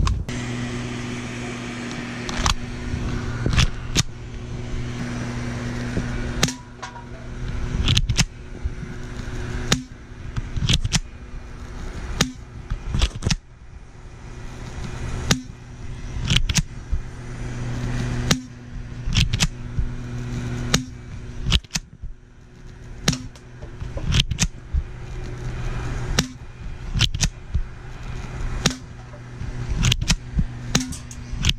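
Spring-action airsoft replica of a Glock 17 pistol being fired again and again, a sharp crack every second or two, with a steady low hum underneath.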